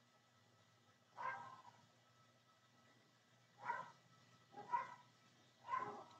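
A dog barking faintly in the background, four short barks a second or so apart.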